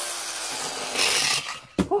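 Whirring of a plastic Raving Rabbids spinning-top toy and its launcher, which stops about a second and a half in. A couple of sharp knocks follow as the top tumbles off the table.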